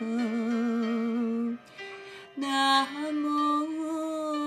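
Slow Buddhist devotional singing: a single voice holds long, wavering notes over soft accompaniment. It drops away briefly in the middle, then comes back on a new sustained note.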